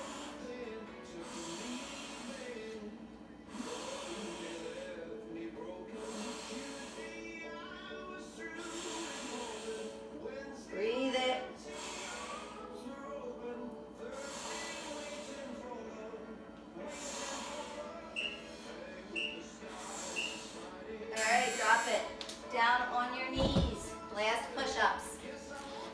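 Music with a singing voice playing over a speaker, under the short, hard breaths of a woman pressing dumbbells overhead.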